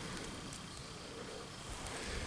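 Quiet woodland background: a faint steady hiss with no distinct events.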